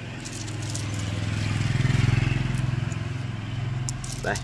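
A motor vehicle's engine going by: a low steady hum that swells to its loudest about halfway through and then fades.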